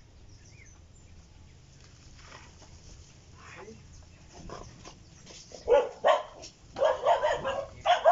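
Several dogs barking: faint at first, then loud, rapid barking breaks out about six seconds in and keeps going. The dogs are barking at workers coming down past the property.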